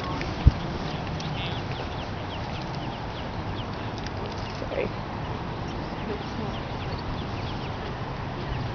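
Mallard ducklings peeping: many short, high, falling calls scattered throughout, over a steady background noise. A single sharp thump about half a second in.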